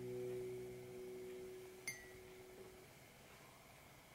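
Acoustic guitar's last chord ringing out, its notes fading away over about three seconds. A faint click about two seconds in.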